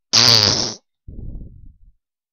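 Comic fart sound: a loud, buzzy blast with a wavering pitch lasting under a second, then a lower, quieter sputtering one.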